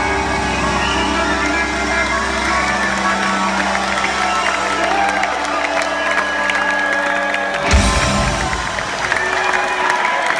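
A live rock band letting a sustained closing chord ring out over an audience cheering, with a final full-band hit about three quarters of the way through.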